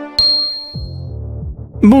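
A single bright chime, struck once just after the intro music cuts off, rings out high and fades over about a second. A low background music track then comes in, and a voice starts right at the end.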